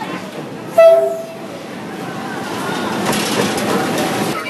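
Diesel locomotive horn giving one short blast about a second in. Then the rumble and clatter of the train rolling past the platform grows louder.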